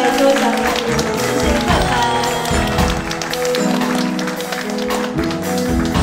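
Live pop band performance: voices singing over electric guitar, bass, drums and keyboard.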